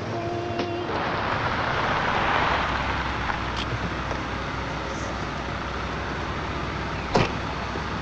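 A Jeep SUV pulls up, its noise swelling and then dying down into a low steady engine idle. A sharp knock about seven seconds in, like a car door shutting, follows a couple of fainter clicks.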